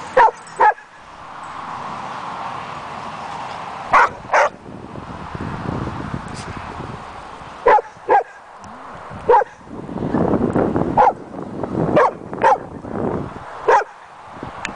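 A dog barking during rough play with other dogs: about a dozen short, sharp barks, often in quick pairs. A rougher, noisier stretch comes between barks about ten seconds in.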